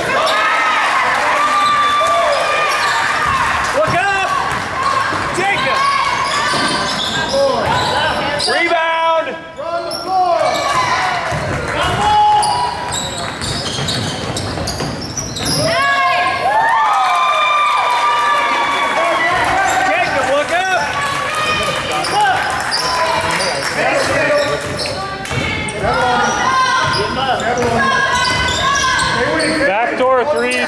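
Basketball game in a gym: a basketball being dribbled on a hardwood court, with many short high squeaks and indistinct voices, all echoing in the large hall.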